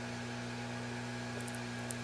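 Steady electrical hum with a faint hiss, the background noise of the shop, with a couple of faint light ticks near the end.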